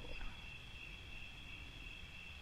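Faint, steady high-pitched chirring of crickets over quiet room tone.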